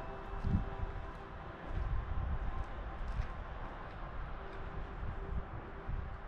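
Wind buffeting the microphone outdoors, an uneven low rumble that comes and goes in gusts.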